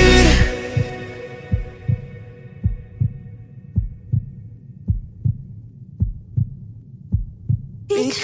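The last chord of a song fading out, then a heartbeat sound effect in the music: soft low double thumps, lub-dub, about once a second.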